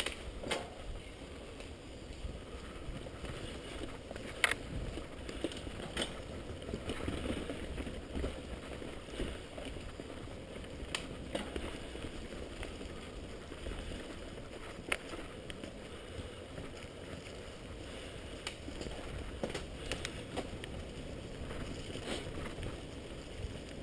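Mountain bike riding over a bumpy forest dirt trail: a steady rumble of tyres and rushing air, broken by sharp knocks and rattles from the bike over roots and bumps, the loudest about four seconds in.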